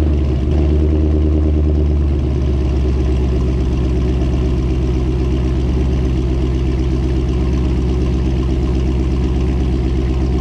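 Holden Commodore VE SS ute's LS V8 idling cold through its race exhaust just after start-up, easing down to a lower, steady idle about two seconds in. This is its new idle on a fresh custom tune, which sounds totally different.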